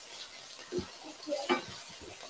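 Garlic scapes frying in oil in a skillet, a steady sizzle, as a spatula stirs and tosses them, with a couple of short knocks of the spatula against the pan about a second in and again just after.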